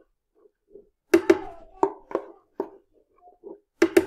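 A spoon tapping and scraping against a cup and a juicer's feed chute in a series of irregular short knocks, as ginger pulp is scraped in.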